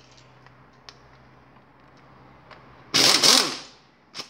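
Impact wrench giving one short burst about three seconds in, spinning out a camshaft-gear bolt on a quad engine; its whine falls in pitch as it winds down. Before it there is one faint click.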